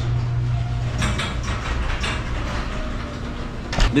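Electric garage door opener raising the garage door: a steady motor hum with the noise of the door travelling up its tracks.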